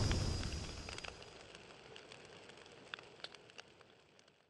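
Fire-and-explosion sound effect dying away: a low rumble fades out over the first second and a half, leaving faint scattered crackles.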